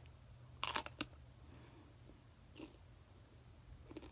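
Teeth biting into a small raw yellow pepper: a crisp crunch about half a second in, a second short snap just after, then faint chewing.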